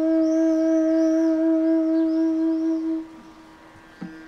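Bansuri flute holding one long low note with a slight waver, which stops about three seconds in, leaving a quieter steady drone. Above it a small bird gives a run of short, arching high chirps.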